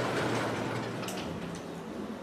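Steady room noise in a lecture room, with one faint tick about a second in.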